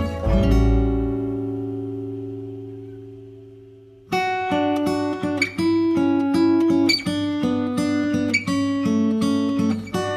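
Background music of plucked acoustic guitar: a chord rings and slowly fades over the first four seconds, then a plucked melody comes back in at full level and runs on.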